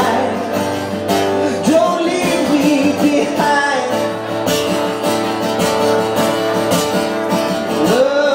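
A solo acoustic guitar strummed steadily, with a man singing phrases into a microphone over it, a live performance by one singer-guitarist.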